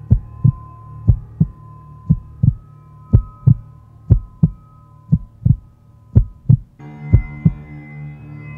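Heartbeat sound effect in a film soundtrack: a deep double 'lub-dub' thump about once a second, eight times, over a steady low drone with a thin held high tone. More sustained tones join the drone shortly before the end.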